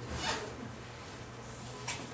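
A brief rustling rasp, about half a second long, near the start, then a single light click near the end, over a steady low room hum.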